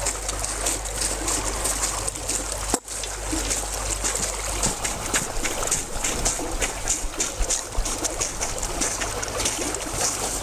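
Water sloshing and trickling in an open hole in lake ice, with many small clicks and crackles of ice throughout.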